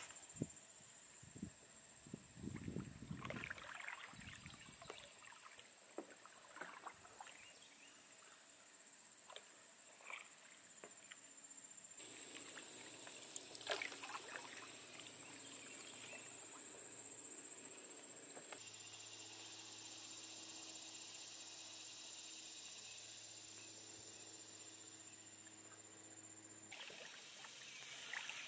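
Quiet canoe paddling: soft dips and swishes of a paddle in lake water at an unhurried stroke, with a few light knocks now and then.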